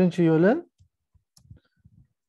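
A man's voice for a brief moment, then a few faint, scattered computer keyboard keystrokes as a word of code is typed.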